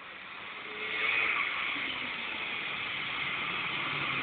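Snowmobile engine getting louder over the first second as the sled approaches, then running steadily at speed.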